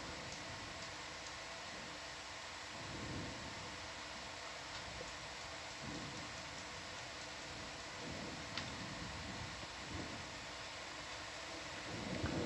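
Steady low hiss and hum of room tone, with a few faint soft swells and a light click about two-thirds of the way through.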